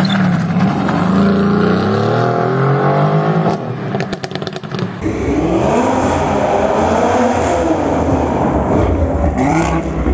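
Mercedes-AMG GT R's twin-turbo V8 accelerating away, its pitch rising, with a quick run of sharp exhaust pops about four seconds in. Then a different car, an Audi hatchback, revving and accelerating in a tunnel, its engine pitch rising and falling.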